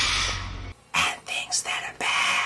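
Whispering voices over a low drone, which cuts off suddenly under a second in. After a brief pause come a few short whispered words.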